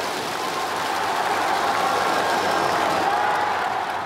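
Steady stadium crowd noise with faint voices in it.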